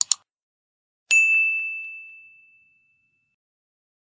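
Subscribe-button animation sound effects: two quick mouse clicks, then about a second later a single bright bell ding that rings out and fades over about two seconds.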